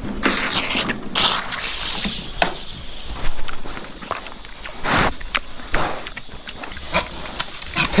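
Several pigs drinking at a plastic water drum, slurping and splashing in irregular noisy bursts with scattered clicks; they are messy drinkers.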